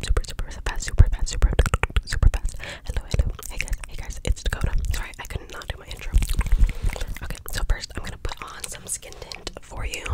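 Soft whispering close to a microphone, broken by many small clicks and soft low thumps from mouth and hand movements near it.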